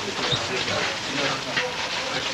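Indistinct chatter of several people talking at once in a crowded room, over a steady hiss.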